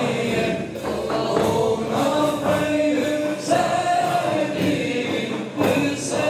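Men's voices chanting together in a Sufi zikr, singing long held notes in unison. Regular percussion strikes from frame drum and cymbals run under the chanting.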